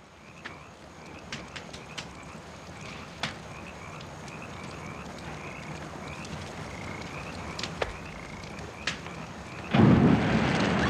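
Steady outdoor night ambience with a run of faint, repeated chirping animal calls and a few scattered soft clicks.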